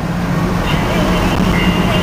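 Steady drone of engine and road noise inside a Suburban's cabin at highway speed.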